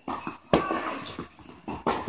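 Tennis balls struck by rackets and bouncing during a rally on an indoor hard court: two sharp pops about a second and a half apart, with a fainter knock just before the first.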